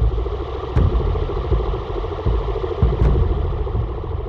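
Dark ambient electronic music: a deep, engine-like rumbling drone with a grainy churning texture above it, struck twice by sharp percussive hits about two seconds apart.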